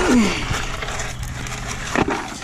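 A short voiced sound from a man falling in pitch, like a drawn-out "hmm", then a steady rush of creek water running over rocks.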